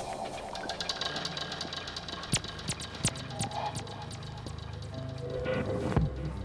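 Minimal electronic music (micro house / minimal techno) in a quiet, sparse breakdown: scattered clicks and short high ticks with a few brief synth blips, with no steady kick drum.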